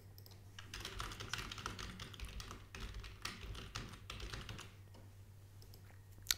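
Typing on a computer keyboard: a quick run of faint keystrokes that stops about a second before the end.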